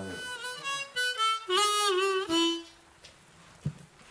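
Harmonica in a neck rack blown in a short phrase of several notes, the longest one bent and wavering in pitch, stopping a little past halfway. A soft click follows near the end.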